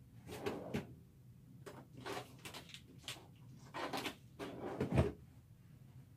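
Irregular knocks and rustles of things being moved and handled, like a drawer or cupboard being used, ending with a heavier thump about five seconds in, over a faint steady low hum.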